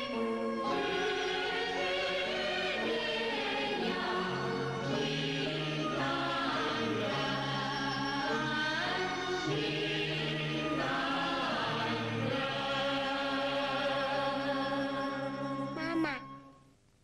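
Background film music: a choir singing long held chords over a steady low bass, the chords shifting every second or two, dying away at the very end.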